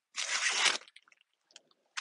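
Short crunching rustles of soil and dry plant debris as a garden pole is pulled up from the bed: one about half a second long near the start, a few faint ticks, then another starting at the very end.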